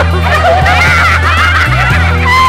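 Several young women laughing together, many overlapping giggles and squeals, over background pop music with a steady bass line.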